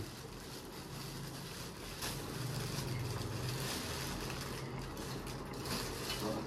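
Low steady hum with a faint crackle of plastic bags being handled as rice is taken from them.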